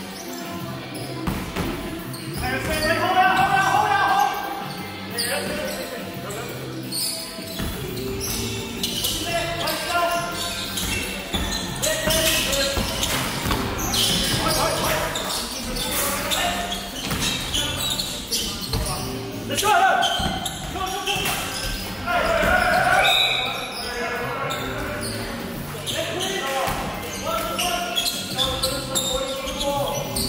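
Basketball bouncing on a hardwood gym floor during play, with players calling out now and then, echoing in a large hall.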